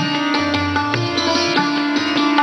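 Santoor, the Indian hammered dulcimer, played in a quick run of struck, ringing notes, with tabla keeping the rhythm underneath.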